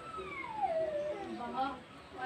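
A pet animal's long, high call gliding down in pitch over about a second, followed by a few shorter calls about one and a half seconds in.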